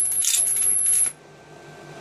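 High-voltage arc from a transformer driven by an IGBT half bridge, crackling with a steady high-pitched whine, then cutting out suddenly just over a second in as the drive stops.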